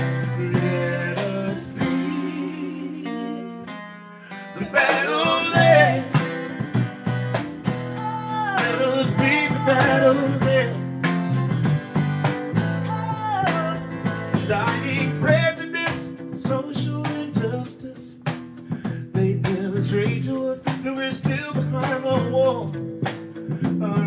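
A live band playing a song: acoustic guitar, electric bass guitar and a drum kit under a man singing lead. The band drops to a quieter stretch about three seconds in, then the voice comes back in strongly.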